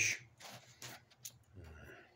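A man's voice trailing off mid-sentence, then a pause with a few faint clicks and a short low murmur near the end.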